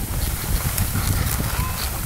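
Skis sliding and scraping over packed snow on a downhill run, with wind rumbling on the microphone.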